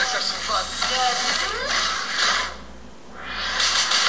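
Movie trailer soundtrack playing back: a dense mix of action sound effects and score, with brief snatches of voices in the first second or so. About halfway through it drops away briefly, then swells back up.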